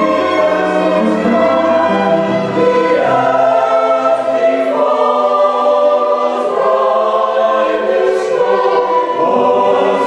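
Women's choir singing with two violins playing alongside. The lowest notes drop out for a couple of seconds midway.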